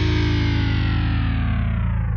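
Hardcore punk recording: a single held, distorted electric guitar chord slowly sliding down in pitch over a sustained low bass note, with no drums.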